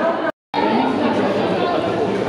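Indistinct chatter of many voices from a seated crowd in a large hall, cut by a brief gap of total silence about a third of a second in.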